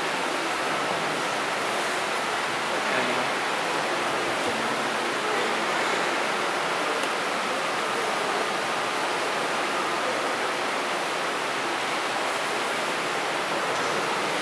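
A steady rushing noise, even and unbroken, like wind or running water.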